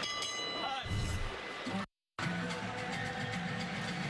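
Boxing ring bell ringing at the end of the round, its tone dying away within the first second. After a brief cut to silence about two seconds in, broadcast music plays under the replay.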